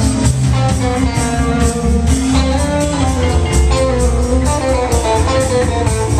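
Live band playing without vocals: electric guitars over bass and drums.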